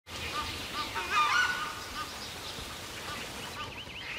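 Birds calling in a jungle-like setting: many short, repeated chirping calls, with a louder cluster of several calls about a second in.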